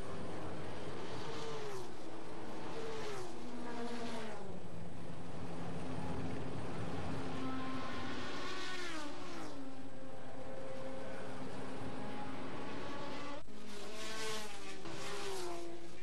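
Racing sports cars' engines at high revs passing one after another, each engine's pitch falling as it goes by.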